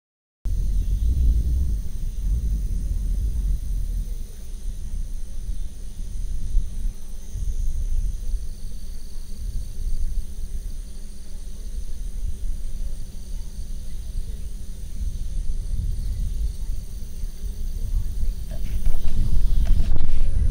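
A loud, steady low rumble outdoors, starting abruptly about half a second in after a moment of silence, with faint steady high-pitched tones above it.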